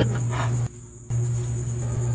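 Steady high-pitched trill of crickets over a low hum, with a short gap just under a second in.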